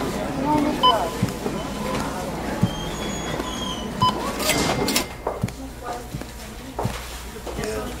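A sampled spoken voice with room clatter, laid over the opening of a lo-fi hip hop track, with a soft low knock about every second and a half.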